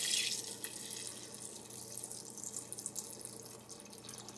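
Water poured from a pitcher into a stainless-steel pot of Saskatoon berries, splashing over the berries; the pour grows steadily quieter as the stream thins.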